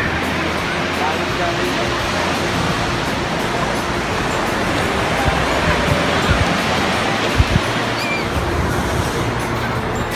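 Steady rush of ocean surf breaking on a sandy beach, with faint voices of people in the distance.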